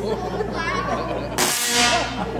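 Audience murmuring, then about one and a half seconds in a sudden loud buzzing burst from the large Tesla coil firing, lasting about half a second.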